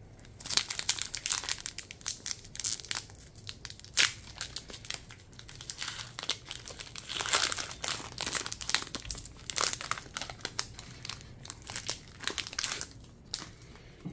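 Foil booster-pack wrapper crinkling as it is torn open and handled, a dense irregular crackle with a sharp loud crack about four seconds in.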